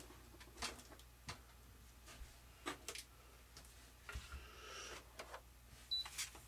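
Faint, scattered small clicks and light rustling from hands handling the fittings and wiring of an RC model airplane, with a short spell of rustling about four seconds in.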